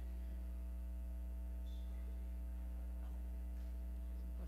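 Steady electrical mains hum, a low buzz with its overtones, running evenly with nothing else clearly above it.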